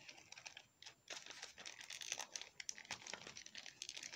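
Faint rustling and small plastic clicks from an action figure being handled as its coat is worked back onto it, sparse at first and busier from about a second in.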